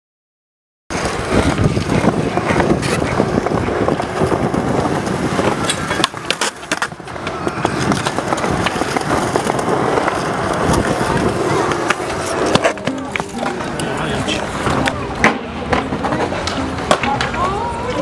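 Skateboard wheels rolling on concrete, with sharp clacks of the board against the ground scattered throughout, starting after about a second of silence.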